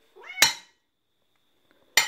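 Domestic cat meowing: one loud meow rising in pitch about half a second in, then a short, sharp sound near the end. It is the fussy call of a cat asking for food.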